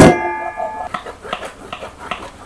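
Stainless steel sieve clanks against the steel bowl under it, ringing for almost a second, then a wooden spoon scrapes tomato purée through the wire mesh in soft, repeated strokes.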